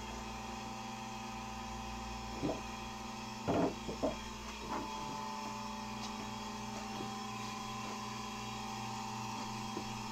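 Marine air conditioner running: a steady hum made of several held tones, broken by a few light knocks between about two and a half and five seconds in.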